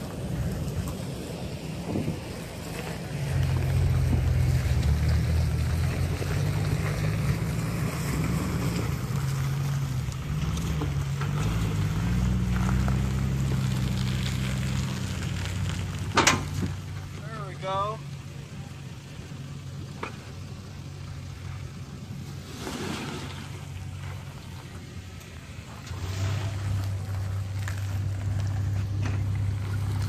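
Lexus LX450's 4.5-litre straight-six engine working at low revs as the truck crawls over granite slab. Its note rises and falls with the throttle, eases off for a while past the middle, then picks up again near the end. A single sharp knock comes about halfway through.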